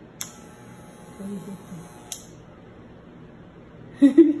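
Corded electric hair clipper switched on with a click, running with a faint steady hum for about two seconds, then switched off with a second click.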